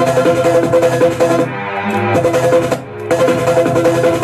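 Old-school 1990s electronic dance music with a steady beat, played from vinyl through a DJ's turntables and mixer. About a second and a half in, the treble drops away and the track thins out, then the full beat comes back about three seconds in.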